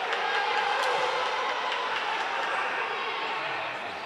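Steady background noise of a futsal crowd and hall, an even rushing murmur with no single event standing out.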